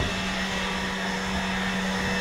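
A steady, unchanging hum over an even rushing hiss, like a small motor or fan running.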